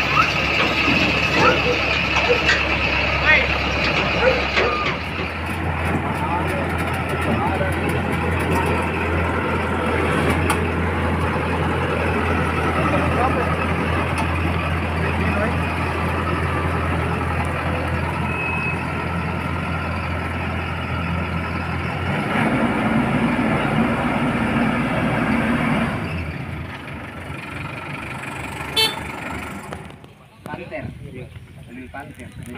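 Crown CCH 106 rice combine harvester running, its engine a steady hum. The engine note changes about five seconds in and again after about twenty seconds, and the sound drops away in the last few seconds.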